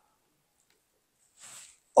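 A pause in a man's speech: near silence, then a short, faint intake of breath near the end, just before he speaks again.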